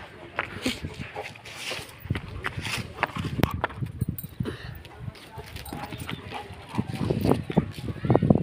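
Irregular light clicks and scuffs as a Labrador moves about on concrete, her claws tapping the ground.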